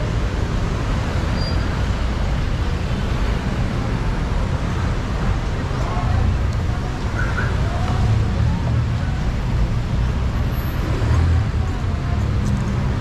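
Steady low rumble of road traffic and running vehicle engines, with faint voices in the background.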